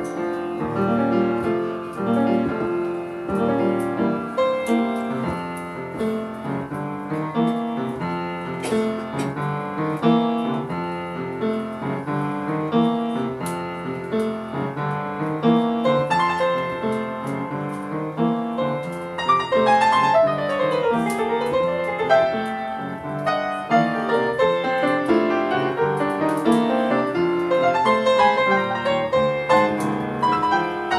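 Solo upright piano playing a slow original tune, with chords and a bass line under a right-hand melody. About twenty seconds in there is a quick run down and back up the upper keys.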